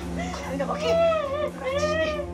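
A woman crying, wailing in drawn-out cries that rise and fall in pitch, three of them in quick succession, over a steady low musical drone.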